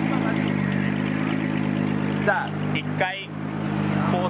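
Nissan GT-R drift car's engine idling steadily, with voices over it.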